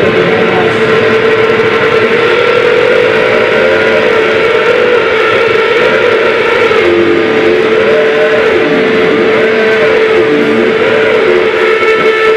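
Loud live noise rock: a sustained drone tone held on one pitch over a dense wash of distorted noise and drumming. From about seven seconds in, a wavering tone swoops up and down in pitch on top of it.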